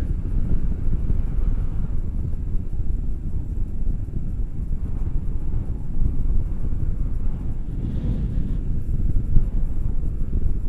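Airflow from a paraglider in flight buffeting an action camera's microphone, a steady low rumble.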